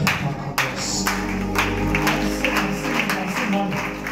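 Worship music played on an electronic keyboard: sustained chords over a steady beat about twice a second.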